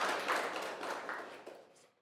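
Audience applauding, the clapping steadily fading out and stopping shortly before the end.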